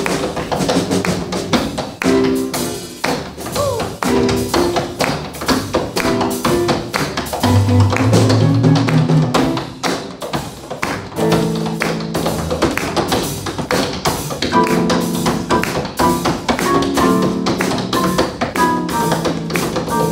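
Tap shoes striking a wooden tap board in fast, dense rhythmic runs of clicks, with the jazz band playing along: piano chords and upright bass notes under the taps.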